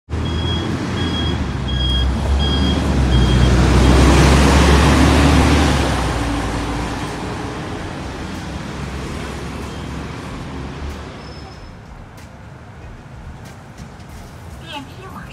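Road traffic: a heavy vehicle goes past, its low engine rumble and road noise swelling to a peak about four seconds in, then fading away over the following seconds. In the first three seconds a run of five short, high beeps sounds.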